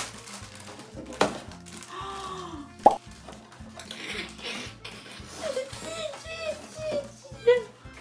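A cardboard gift box being opened and handled, with a sharp knock about a second in and a louder one near three seconds, under background music and short excited voice sounds.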